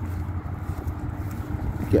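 Steady low outdoor rumble with a faint constant hum under it; a man's voice starts just at the end.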